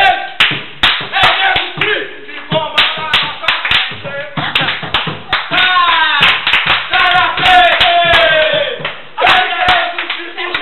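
A group of young men's voices chanting and shouting loudly over many hand claps and slaps.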